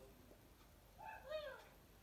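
A single short, faint meow-like call about a second in, its pitch rising and then falling, over near silence.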